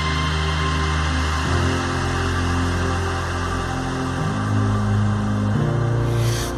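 Background music: sustained low synth-style chords, shifting to a new chord about every one to three seconds.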